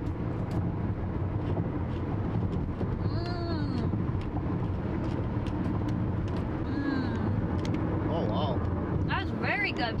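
Steady road and engine noise inside a moving car's cabin. Brief voice murmurs come about three and seven seconds in, with more near the end.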